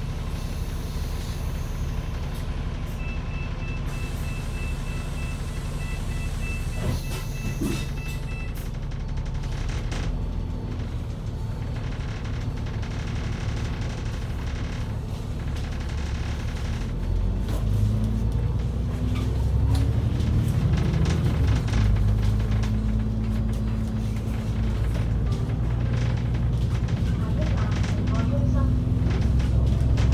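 Double-decker bus engine heard from inside the upper deck: a steady low rumble while standing, with a rapid run of high electronic beeps a few seconds in. From about halfway, the engine note rises and grows louder as the bus pulls away and climbs.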